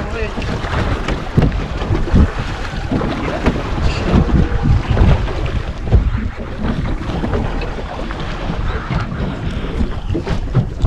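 Wind buffeting the microphone on an open boat at sea, over water lapping at the hull, with irregular knocks and bumps throughout.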